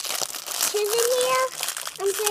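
Crinkling and crackling of a pink plastic toy wrapper being handled and pulled open by a child's hands. About halfway through, a child's voice holds one note for under a second.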